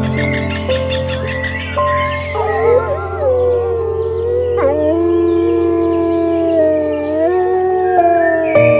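Long wavering howls, several pitches at once, sliding up and down from about two seconds in, over background music with a steady drone.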